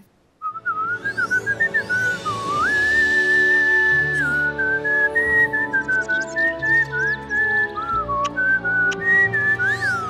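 A melody whistled over soft background music: one clear tone that moves up and down with short slides, held notes and a few quick warbles near the end. It starts after a short silence about half a second in.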